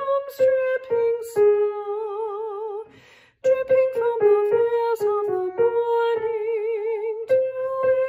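A woman singing a second-voice choral part alone, without accompaniment, note by note with vibrato on the held notes; she takes a quick breath about three seconds in.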